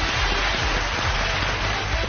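Studio audience and judges applauding: dense, steady clapping.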